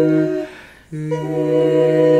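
An a cappella vocal quartet sings a sustained chord in parts. The voices break off about half a second in and come in again on a new held chord near one second in.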